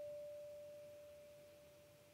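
A single high note on a steel-string acoustic guitar's B string, the last note of a blues solo lick, left ringing as one pure tone and slowly fading to near silence.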